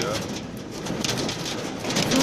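Hail and rain pattering on the roof and windscreen of a minibus, heard from inside the cabin, lighter just after the start than a moment before.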